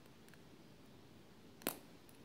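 A faint tick and then, near the end, one sharp plastic click as the side door of a GoPro Hero Session is slid open by hand, otherwise near quiet.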